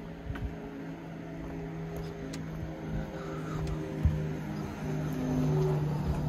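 A car engine hums steadily and grows louder toward the end, as if a vehicle is approaching along the street. Footsteps on the pavement and a few knocks sound over it, the sharpest about four seconds in.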